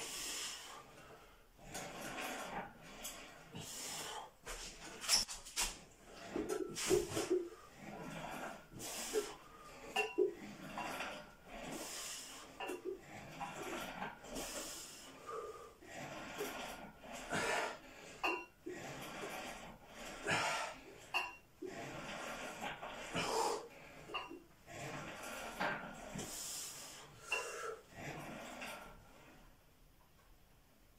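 A man breathing hard through repeated lat pulldown reps, a loud breath or exhalation every second or two. The chain and weight plates on the loading pin clink as they rise and fall.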